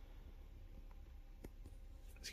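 Near silence: room tone with a faint low hum and a small faint click about one and a half seconds in.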